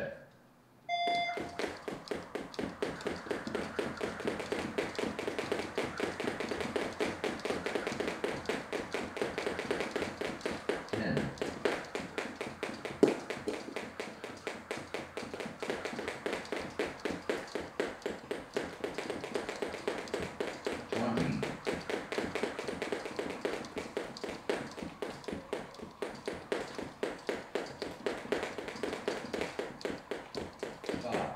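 A start beep about a second in, then two speed jump ropes ticking against the floor in a rapid, even train of clicks as two skippers do alternate-foot speed step for 30 seconds. Short voice calls come in twice, at about a third and two thirds of the way through.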